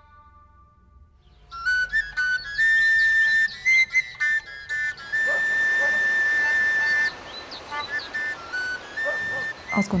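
Background music: a flute-like wind instrument playing a slow melody of long held notes, coming in after a quiet first second and a half.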